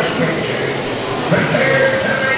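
Dark-ride show audio: a man's voice calling out in a drawn-out, wavering tone, held for most of the last second.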